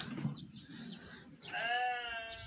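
One long, slightly wavering bleat from a sacrificial livestock animal (kurbanlık), starting about one and a half seconds in.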